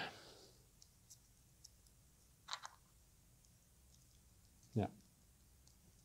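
Faint clicks of a Zoids Wild Gusock kit's hard plastic parts being handled and fitted together, with a quick double click about two and a half seconds in.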